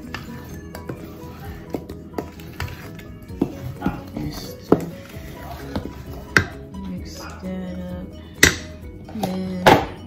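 A utensil knocking and clinking against a mixing bowl as cupcake batter is stirred by hand, in irregular taps with a few louder knocks in the second half. Background music plays underneath.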